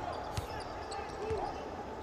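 A basketball being dribbled on a hardwood court, two thuds about a second apart, over a steady background of arena noise.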